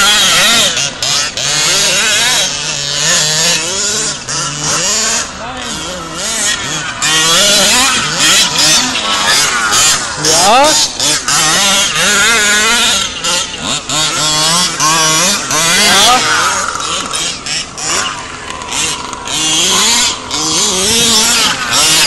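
Small two-stroke engine of an RC baja buggy revving up and down continually as it is driven across sand, climbing sharply in pitch about ten seconds in.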